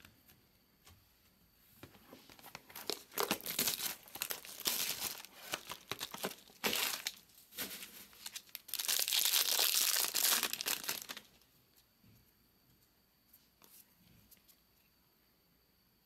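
Plastic-foil wrapper of a trading-card pack crinkling as it is handled, then torn open in one long rip about nine seconds in.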